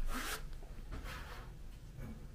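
Two short rasping scrapes about a second apart, from hands handling the white cabinet panels during flat-pack assembly.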